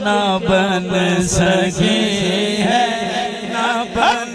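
A man singing a naat, unaccompanied Urdu/Punjabi devotional praise poetry, through a microphone and PA. The lines are long and ornamented, with wavering held notes over a steady low drone.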